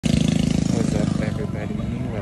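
A motor vehicle engine running close by, loudest at the start and easing off slightly, with a person's voice talking over it.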